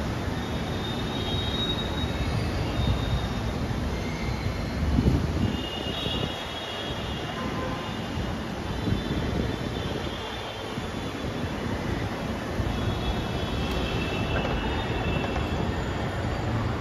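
Ahmedabad Metro train running on the track: a steady rumble with thin, high wheel squeals coming and going.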